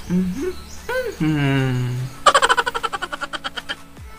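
A man humming wordlessly, his pitch sliding up and down, followed by a rapid rattling pulse that fades away over about a second and a half.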